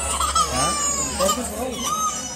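A baby crying in high, drawn-out wails.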